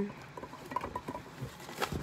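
Rummaging in a cardboard box: light rustling and small scattered taps as items are handled, with a sharper click near the end.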